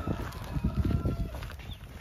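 Footsteps of people walking on a road, heard as irregular low thuds, with wind buffeting and handling noise on the microphone of a camera carried along.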